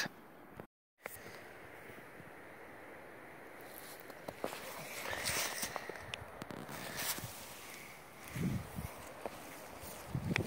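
Footsteps in snow, faint and irregular, with a louder low thump late on.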